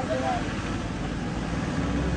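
Street noise: a steady low rumble of vehicle traffic that grows a little louder near the end, with indistinct voices of people nearby.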